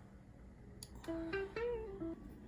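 Faint room noise, then about a second in a short melodic phrase of a few held notes with slides between them.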